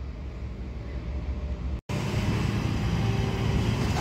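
Distant diesel engine of a demolition excavator running steadily, a low rumble under outdoor noise. It cuts out completely for a moment about two seconds in and comes back louder.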